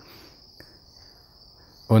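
Quiet pause: faint room tone with a thin, steady high-pitched whine running underneath.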